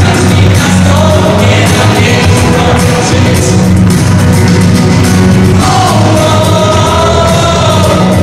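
A group of singers, led by a man and a woman on microphones, sings loudly over amplified backing music. Near the end, a lead voice holds a long, sliding note.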